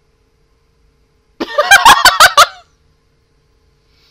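A woman's short, loud burst of laughter: five or six quick pulses over about a second, starting about a second and a half in.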